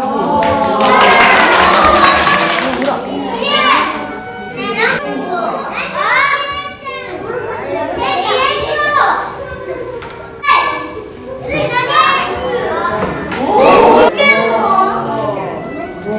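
A group of young children calling out and exclaiming together, many high voices overlapping, loudest about a second in and again near the end.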